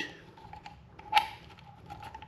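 Compression tester gauge being coupled onto the metal end fitting of its hose: faint handling ticks of the fittings and one sharp click a little over a second in.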